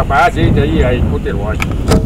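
A man's voice speaking, with wind rumbling on the microphone and a sharp click near the end.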